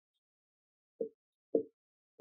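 Marker pen writing on a whiteboard: two short strokes, about a second in and again half a second later.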